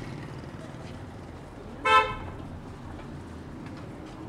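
A single short vehicle horn toot about halfway through, over a steady low rumble of street traffic.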